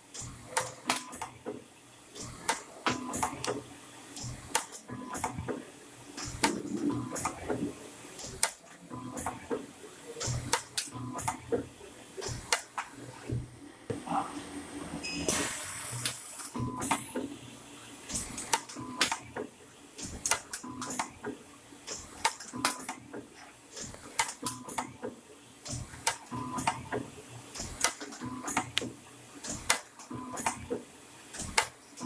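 Toroidal common mode choke winding machine at work, winding copper wire onto a ring core: a busy run of sharp irregular clicks and mechanical clatter over a low running hum. A short hiss comes about halfway through.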